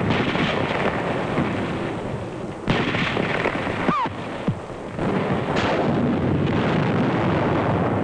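Battle sounds on a 1940s film soundtrack: a continuous rumble of explosions and gunfire as a pillbox is blasted, with sudden louder blasts a little under three seconds in and again about five seconds in, and a short falling whistle just before the second.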